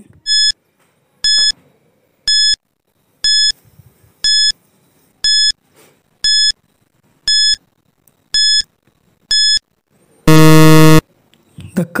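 Countdown timer sound effect: ten short high beeps, one a second, then a loud, harsh low buzzer about ten seconds in that signals the time is up.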